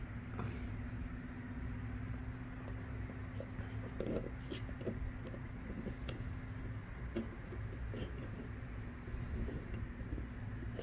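Small clicks and rattles of a drone flight controller and carbon-fibre frame being handled on a table, bunched in the middle of the stretch, over a steady low hum. A faint steady tone in the hum stops about seven seconds in.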